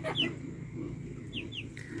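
Short, high bird chirps, each sliding downward: one just after the start and a quick pair about a second and a half in.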